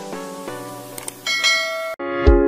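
Intro jingle of chiming, bell-like notes struck one after another, moving up to higher notes a little past halfway, then breaking off abruptly at the end.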